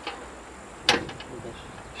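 A single sharp metallic click about a second in, with a smaller click at the start, as the bonnet catch of an old Moskvich 411 is worked by hand to release the bonnet.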